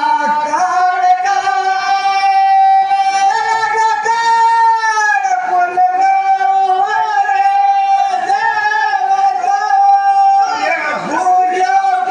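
Folk singing: a high voice holding long notes that waver and slide in pitch, with a falling slide about five seconds in, and no drum beat.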